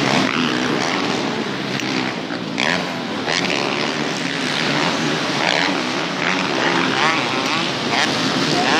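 Several motocross motorcycles racing on a dirt track, their engines revving up and down in wavering pitch.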